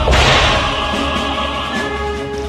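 Transition sound effect: a sudden whip-like swish at the start that fades over about half a second, with music carrying on underneath.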